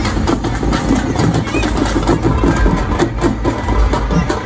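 Large drums beaten in a fast, steady rhythm amid a noisy crowd.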